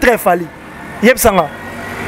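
A man speaking, in two short phrases: one at the start and one about a second in. Between them a steady background noise swells slightly.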